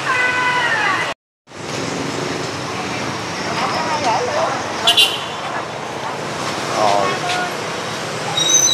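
Busy street ambience: steady traffic noise with people talking in the background. The sound drops out completely for a moment just after one second, and a short, sharp high-pitched sound comes about five seconds in.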